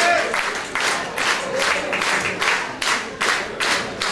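Audience clapping in unison in a steady rhythm of about four claps a second, applauding the band at the end of its set.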